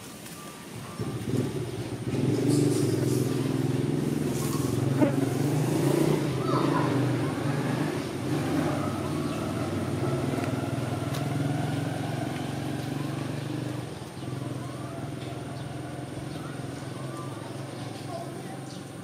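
A motor vehicle engine running steadily close by, coming in about a second in and easing a little in the last few seconds.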